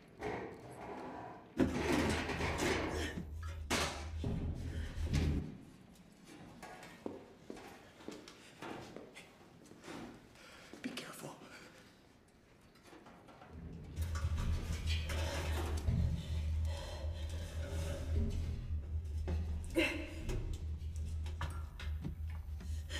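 Film soundtrack: a steady low drone that comes in twice, with scattered soft knocks and faint, low voices in between.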